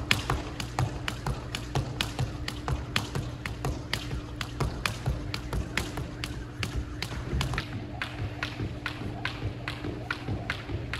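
Jump rope skipping on a wooden gym floor: quick, even ticks of the rope and landings, about three a second, over a steady low hum.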